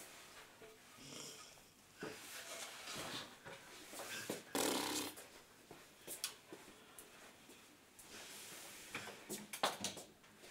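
A person pretending to snore: a few breathy snores, the loudest about halfway through. A few sharp clicks near the end.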